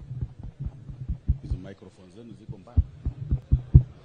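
Handling noise of a microphone being adjusted on its stand: irregular soft low thumps, with faint voices in the background.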